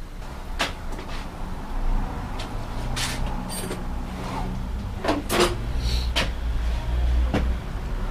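Scattered sharp clicks and knocks of hand tools and bicycle brake parts being handled and set down, about eight in all, over a low steady rumble that grows stronger in the second half.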